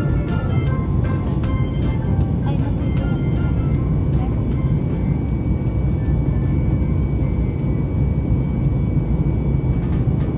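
Steady low rumble of jet airliner cabin noise in flight, under background music whose pitched notes thin out after the first few seconds.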